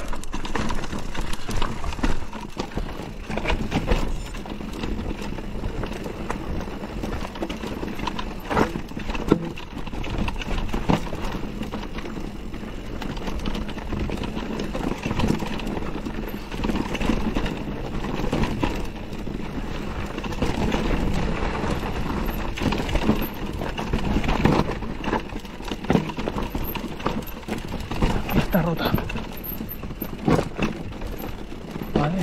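Mountain bike riding down a rocky singletrack: tyres crunching over loose stones and rock, with the bike rattling and knocking over the bumps.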